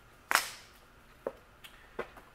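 A sharp clack about a third of a second in, then a few fainter clicks, from tools and hose fittings being handled at a workbench.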